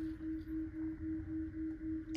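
A steady low electronic hum-tone that pulses about four times a second.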